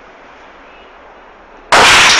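Quiet room tone, then near the end a sudden, very loud bang that does not die away but runs straight on into loud, harsh noise.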